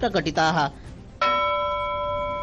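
A man's voice finishes a word, then about a second in a single bell chime strikes and rings on, slowly fading: a news bulletin's transition sting that opens a new segment.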